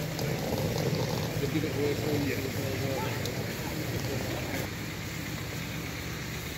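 Indistinct voices over a steady low rumble of city street noise; the rumble and voices drop back about four and a half seconds in.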